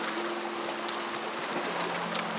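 Background music of slow held chords that change pitch a couple of times, over a steady rushing hiss.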